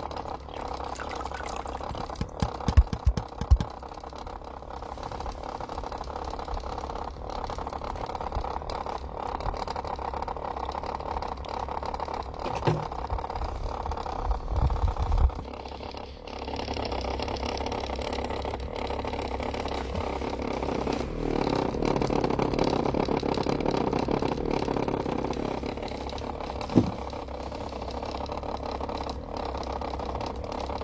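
A standing wave machine runs submerged in a glass bowl of water, a steady mechanical hum with the water churning. There are a few low thumps around three seconds in and again near fifteen seconds, and the hum grows louder for a few seconds past the middle.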